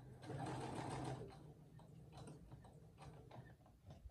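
Brother SE1900 sewing machine running a top stitch for about a second, then going quiet with a few faint clicks.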